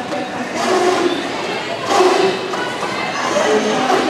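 Indistinct voices of players and spectators in a large echoing sports hall during a roller derby jam, swelling briefly about two seconds in.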